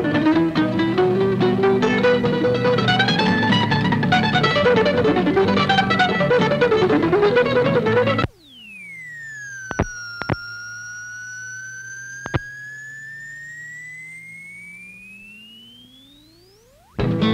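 Live acoustic bluegrass band playing, with a fast flatpicked acoustic guitar lead running up and down the neck, that cuts off abruptly about eight seconds in. After the cut, a quieter whistle-like tone with overtones glides down and then slowly back up, with three short clicks, like a tape or transfer glitch.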